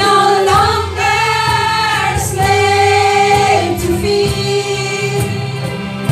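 A women's worship team singing a slow gospel song into microphones, joined by a group of voices, in long held notes over a steady low accompaniment.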